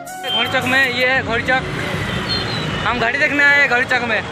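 A voice with background music over steady road traffic noise.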